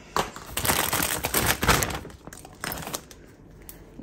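Plastic shopping bag and food packaging rustling and crinkling as a hand rummages through groceries, in irregular bursts that die down near the end.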